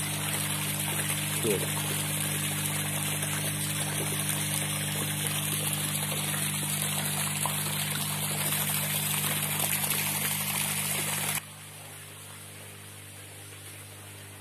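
Water running steadily into a fish tank from an inlet pipe, with a steady low hum underneath. The water sound stops abruptly about eleven seconds in, leaving a quieter steady background.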